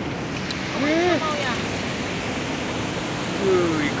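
Steady rushing of river water, with two short wordless voice sounds, one about a second in and one near the end.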